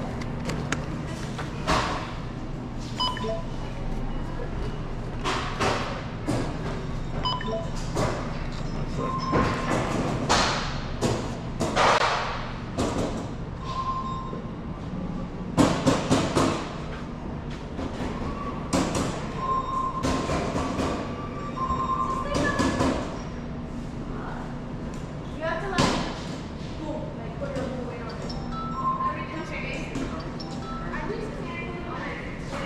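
Groceries being handled and set down at a supermarket self-checkout, with repeated thumps and clinks and short beeps from the barcode scanner every few seconds, over a steady store hum.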